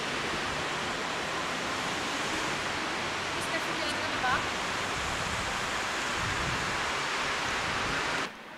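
Steady rushing outdoor noise on a Video 8 camcorder's built-in microphone. A few faint, brief voice-like chirps come through about halfway in.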